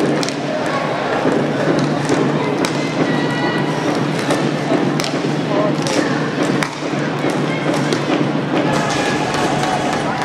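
Inline hockey play on a plastic rink: several sharp clacks and thuds of sticks, puck and players against the floor and boards, over a steady din of voices in the arena.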